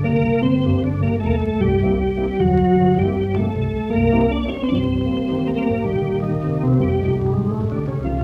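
Instrumental jazz recording: sustained held chords over a low line that moves from note to note, with no singing.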